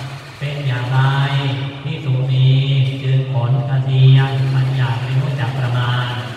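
A Buddhist monk chanting in a low male voice, held on one nearly steady pitch in long phrases with short pauses between them.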